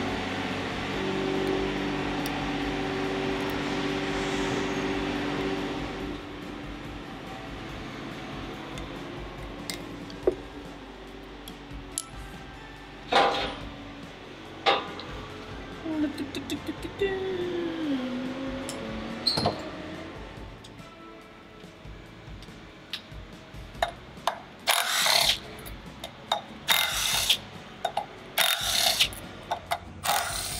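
Background music over shop work, with scattered metallic tool clicks. In the last several seconds a cordless power tool runs in a series of short bursts, about a second each, working bolts off the top of an outboard powerhead.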